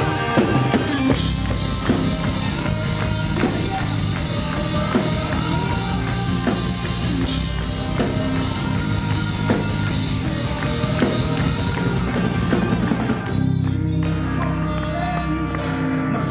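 Rock band playing live: electric guitar over a drum kit, dense and loud throughout. About 13 seconds in, the cymbals and high end briefly drop away, then the full band comes back in.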